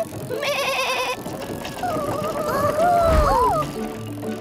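A cartoon sheep's wavering bleat near the start, then sliding tones over soft background music.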